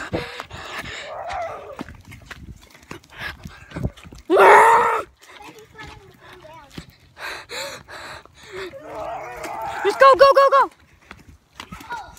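Kids running through the woods: footsteps thudding on the forest floor, with a loud shout about four seconds in and a pulsing, laughing yell near the end.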